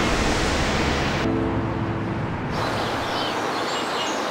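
Scene-transition sound bed: a steady rushing noise with low, held music notes under it. About two and a half seconds in it gives way to a quieter outdoor ambience with faint high chirps.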